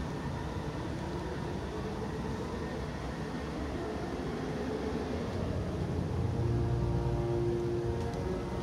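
Steady low outdoor rumble of distant city ambience, with faint held tones of far-off music growing slightly stronger over the last couple of seconds.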